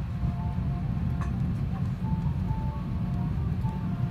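Steady low rumble of airliner cabin noise, with a faint tune of short, separate high notes over it.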